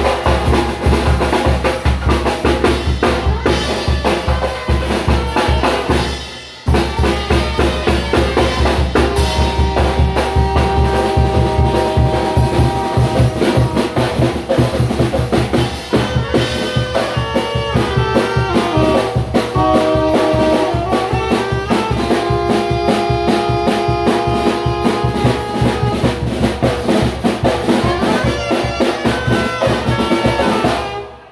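Zacatecas-style tamborazo band playing live: bass drum and snare drums keep a fast, steady beat while saxophones and brass carry the melody. The band breaks off briefly about six seconds in, then comes straight back in.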